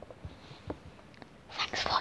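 A few faint, soft taps and clicks of small plastic toys being handled and set down, followed near the end by close-up whispering.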